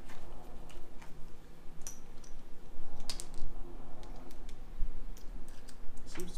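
Scattered small metal clicks and taps of a bolt and hand tool being worked into the muffler mount of a Go Ped scooter's small engine, over a steady low hum.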